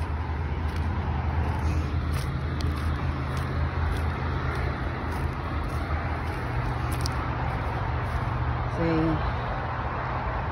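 A motor vehicle's engine running nearby, a steady low rumble over outdoor traffic noise.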